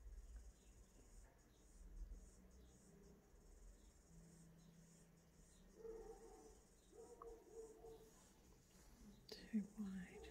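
Near silence: faint room tone with a steady high hiss, and a single sharp click near the end.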